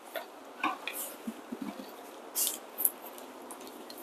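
Faint scattered clicks, taps and rustles of a person moving about and handling small objects, with a couple of short hissing scrapes past the middle.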